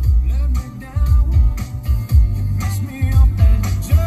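Music with a strong bass beat playing loud from DAB radio through the BMW M135i's factory stereo, the standard 'business' system rather than the premium one, heard inside the car's cabin.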